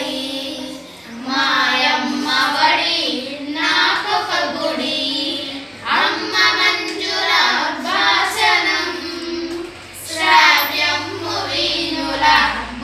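Girls singing a song together in unison, without accompaniment, in phrases of about two seconds with short breaths between.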